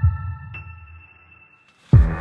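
Electronic intro music: a held chime-like chord fades away, then a drum beat starts just before the end.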